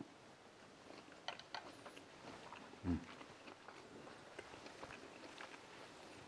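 A person chewing a mouthful of food, heard as faint, scattered small mouth clicks, with a short closed-mouth 'mm' of approval about halfway through.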